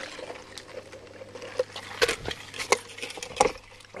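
Footsteps and the rustle of carried things: three sharp knocks about two-thirds of a second apart, with small rustles between them, over a faint steady hum.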